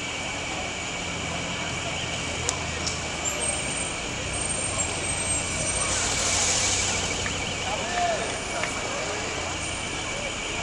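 Busy city street ambience: a steady wash of crowd voices over a low traffic rumble, with a brief louder hiss swelling and fading about six seconds in.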